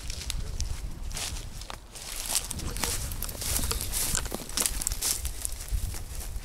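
Footsteps through dry grass and dead undergrowth: an irregular run of crunching and rustling, with a low rumble underneath.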